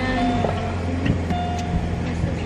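Steady low rumble of a car's engine and road noise heard inside the cabin, with music playing over it in a few held notes.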